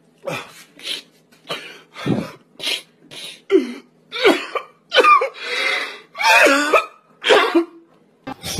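A man sobbing: a string of about a dozen short, ragged gasps and broken wails, the ones in the second half louder and with a wavering pitch.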